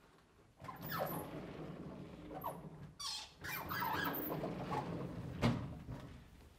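Sliding blackboard panels run along their rails in two long, rough, squeaky pushes. A sharp thump about five and a half seconds in is a panel hitting its stop.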